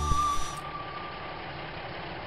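The last chord of a song fades out in the first half second. After that a cartoon truck's engine sound effect idles with a steady rumble.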